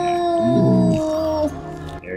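A singer yodeling in a song: one long held note that sags slightly in pitch and ends about a second and a half in.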